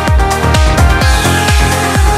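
Electronic dance music with a steady kick drum, about two beats a second, under sustained synth tones. A falling synth sweep starts about a second in.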